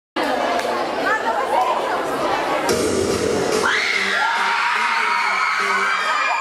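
Audience shouting and cheering. About three seconds in, a song with a pulsing beat starts, and high-pitched screams rise over it.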